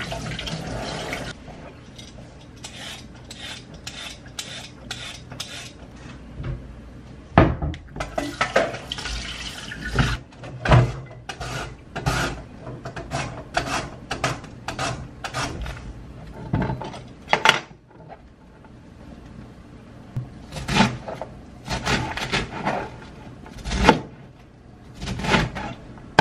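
Kitchen prep sounds: a short burst of running tap water at the start, then a long run of irregular knocks and clatters from a knife and utensils on the cutting board and counter as vegetables are cut.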